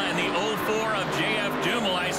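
A male commentator speaking, with stock-car engines running at low speed in the background.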